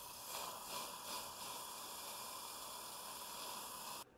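Dental implant surgery: a steady hiss of suction with a faint steady whine from the slow-speed implant handpiece as the final 3.8 mm drill prepares the osteotomy in a fresh extraction site.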